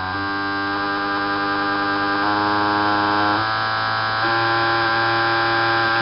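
High-flow (500 lb/hr) fuel injectors buzzing steadily as they are pulsed on an injector test bench at high simulated rpm; the buzz shifts pitch in steps a few times as the pulse rate is changed.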